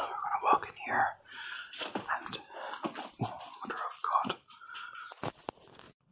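A man whispering close to the microphone, with a few sharp clicks near the end.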